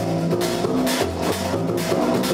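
Live band playing, with drum kit and electric keyboard over a steady bass line.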